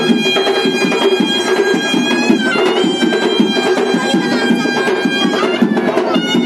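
Loud band music: a reed or pipe wind instrument holding long notes that change pitch a few times, over fast, dense drumming.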